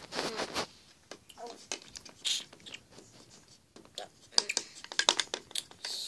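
Pretend eating sounds: short crunching, chomping clicks as a toy pony is played eating ice cream, with a cluster of sharp clicks near the end.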